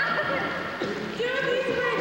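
Excited high-pitched voices of young people squealing and laughing, with some talk mixed in.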